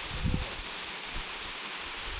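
Steady hiss of a waterfall's thin stream spattering down rock ledges into a pool, with a brief human vocal sound near the start.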